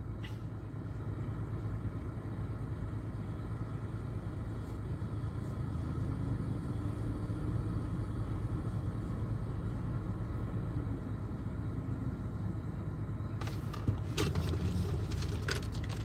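Steady low rumble of a car's running engine heard from inside the cabin, with a few short clicks and rattles near the end.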